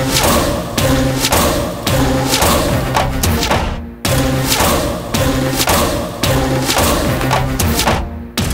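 Dramatic background music driven by heavy, regular drum hits, about two a second, over a low sustained tone, with a brief break about halfway through.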